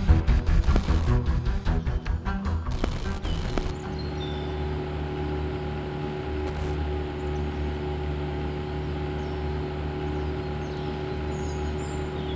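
Title music ends about four seconds in, then a small boat's outboard motor runs at one steady, unchanging pitch.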